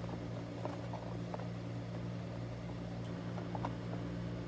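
A steady low hum, as from a running household appliance or fan, with a few faint light clicks from small objects being handled.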